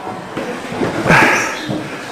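Jumbled voices of a group of people close around the microphone, with one brief louder voice about a second in.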